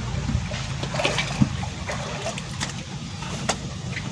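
Steady rush of water flowing in a shallow stone-lined stream, with a few sharp knocks and clicks as a plastic bucket is lifted by its handle and carried out of the water.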